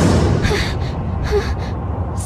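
A person gasping for breath, a few short breathy gasps over a steady low rumble.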